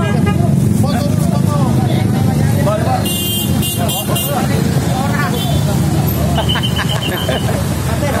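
Several men talking in the background over a steady street-traffic hum, with a brief hissy rustle about three seconds in.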